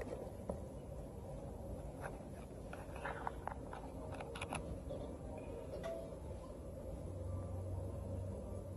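Quiet room noise with a low hum, and a scattering of faint light clicks and taps from about two to four and a half seconds in.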